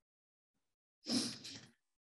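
Silence, then about a second in a single short breathy burst, like a sharp breath or sneeze, from a person close to the microphone, fading over under a second.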